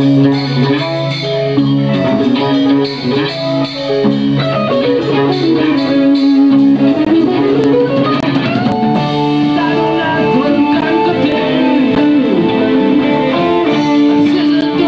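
Live band playing an instrumental passage: electric guitar and bass guitar over a drum kit, with sustained notes. About halfway through, one note slides up in pitch.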